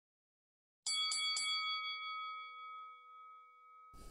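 Bell-like chime struck three times in quick succession about a second in, then ringing on and slowly fading away.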